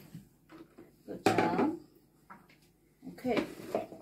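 Two short stretches of untranscribed talk, with a few light knocks of kitchen items being handled.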